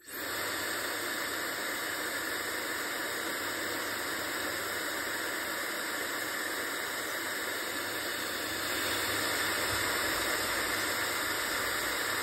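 Laifen Swift hair dryer switched on and running, a steady rush of air and motor noise that starts abruptly and grows slightly louder about nine seconds in. Its noise level is neither loud nor very quiet.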